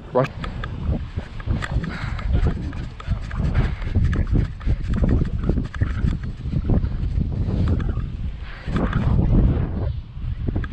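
Wind buffeting a body-worn action camera's microphone as a low, uneven rumble, with handling knocks and footsteps on artificial turf.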